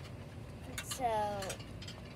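A child says a single "so", with a few faint light clicks and taps around it.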